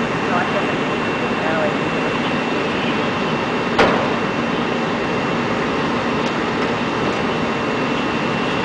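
Steady mechanical drone with a hiss, the running-engine and water noise of a fire scene, broken by a single sharp click about four seconds in.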